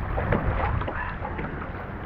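Water splashing and lapping around a kayak as a double-bladed paddle dips in, with wind rumbling on the microphone.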